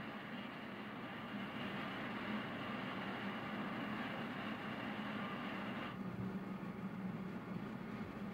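Steady roar of a glass studio's gas-fired furnace, with a low hum underneath; the higher hiss drops away abruptly about six seconds in.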